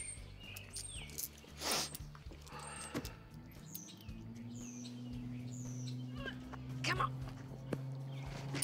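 Small birds chirping in short, falling calls, over a low held tone of soundtrack music that comes in about three seconds in.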